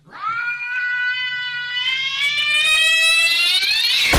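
A cat yowling: one long drawn-out call that slowly rises in pitch and grows louder as it goes.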